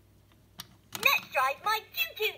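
LeapFrog choo-choo counting toy train starting to talk through its small speaker: a small plastic click, then from about a second in a few loud, high, chirpy spoken syllables of its electronic voice.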